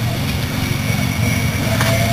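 Steady low engine rumble of a motor running, with a faint thin whine coming in near the end.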